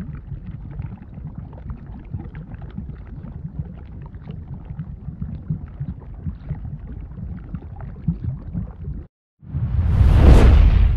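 A low, noisy rumble with irregular crackles and pops, an added sound effect under the animation, cuts off abruptly about nine seconds in. After a brief silence a whoosh starts to swell just before the end.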